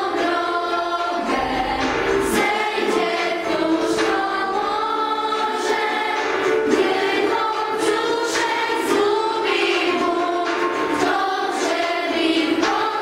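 A group of young, mostly female voices singing a song together in Polish, the held notes of the melody sung in unison.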